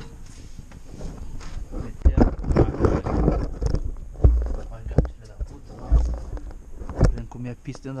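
Handling noise of a camera being picked up, carried and set down: heavy low thumps and knocks, with footsteps, from about two seconds in.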